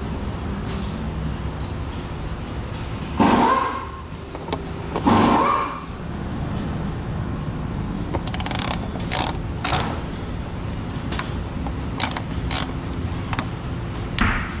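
Sharp metal clicks from a socket tool working the oil-pan drain plug of a Cummins diesel Ram, coming in a scattered series through the second half. A steady background hum runs throughout, and two louder rushing sounds of about half a second each come about three and five seconds in.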